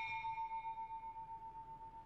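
A single bell tone ringing out and slowly fading, with a slight wavering in its loudness; its higher overtones die away sooner than the main note.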